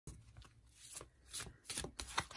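A deck of divination cards being shuffled by hand, with a few faint, quick slaps of cards against each other.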